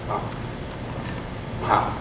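A brief pause in amplified speech: a low steady hum of the hall's sound system, broken by two short voice sounds, a faint one at the very start and a louder one near the end.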